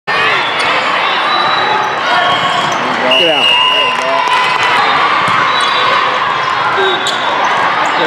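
Busy volleyball hall din: many players' and spectators' voices echoing across several courts, with volleyballs being hit and bouncing as scattered sharp knocks. A short high steady tone sounds for about a second, three seconds in, followed by shouting voices as a point ends.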